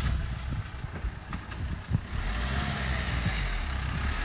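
A Renault Kangoo compact van's engine running and pulling away, its low engine hum building from about halfway through. A few light knocks come in the first two seconds.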